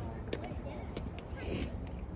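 People talking in the background, indistinct, over a steady low outdoor rumble, with a brief rustle about one and a half seconds in.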